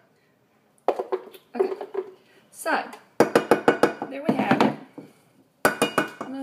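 A spoon scraping and knocking against a container as frozen-banana ice cream is scooped out, in several short bursts of rapid clatter with brief pauses between them.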